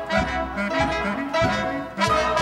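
Pit orchestra playing a brass-led instrumental dance break of a show tune, with trumpets and trombones to the fore and sharp accents on the beat.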